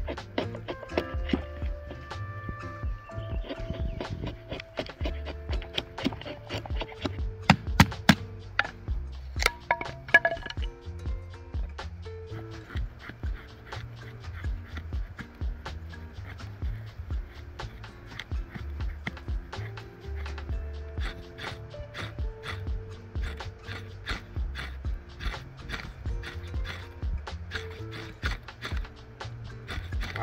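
Background music with a steady beat and a repeating bass line. A few sharp knocks stand out about eight to ten seconds in.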